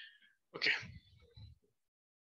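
A person sneezing once: a quick hissing breath in, then a sudden sharp burst about half a second in, trailing off within a second.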